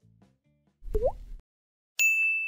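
Short cartoon-style pop sound effect with a quick upward pitch slide about a second in, part of an on-screen subscribe-button animation, after the last faint notes of background music fade out. A bright bell ding strikes right at the very end.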